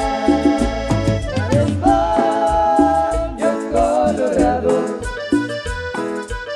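Live dance band playing, with a steady pulsing bass beat and a sustained melodic lead that wavers in pitch in the middle.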